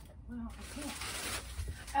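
A hissing noise lasting about a second and a half, with a brief low voice sound near its start.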